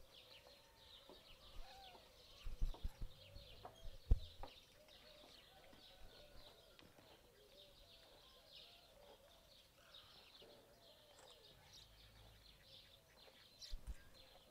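Faint outdoor ambience of birds chirping and calling, with continuous rapid high chirps throughout. A few loud low thumps come between about two and a half and four and a half seconds in.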